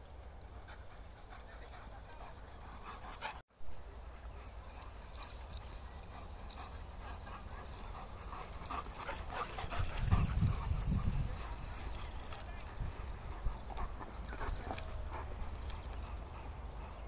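Dogs playing together, a German shepherd, a young golden retriever and a small terrier, with brief dog vocal sounds over a steady low rumble. The rumble grows louder about ten seconds in, and the sound cuts out for a moment about three and a half seconds in.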